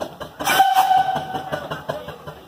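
A steam traction engine's whistle blown once for about a second, starting with a burst of hissing steam, over the quick, even beat of the engine running.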